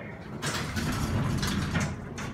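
Centre-opening elevator car and landing doors sliding open, a rattling mechanical rumble that starts about half a second in and runs for over a second.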